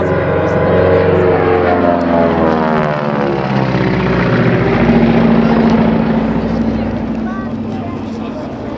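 Beech C-45 Expeditor's twin Pratt & Whitney R-985 radial engines and propellers droning in a low pass overhead. The pitch drops as it goes by, then the sound fades as the aircraft climbs away.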